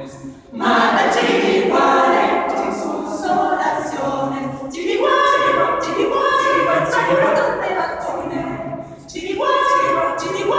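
Mixed choir of men's and women's voices singing a cappella, in sustained phrases with brief breaks just after the start and about a second before the end.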